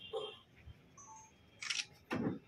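A single camera shutter click near the end, in a quiet room, with a man's brief "oh" at the start.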